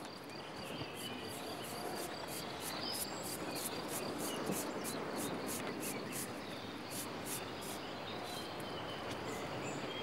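Insects chirping in a fast, even pulse, about three or four chirps a second, over a steady outdoor hiss.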